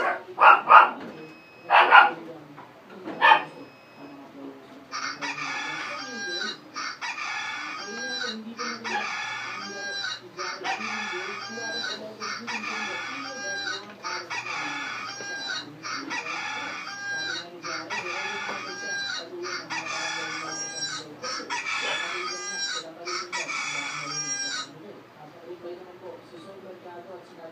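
A looped phone alarm tone, the same short phrase repeating about once a second for some twenty seconds, then cutting off suddenly near the end as it is switched off. A few short, louder sounds come first, in the opening seconds.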